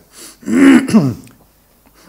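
A person clearing their throat once, a short, loud voiced 'ahem' about half a second in.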